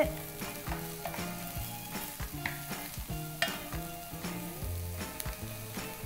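Chopped mushrooms and diced vegetables sizzling in a nonstick frying pan while being stirred with a wooden spatula, which scrapes and taps against the pan now and then.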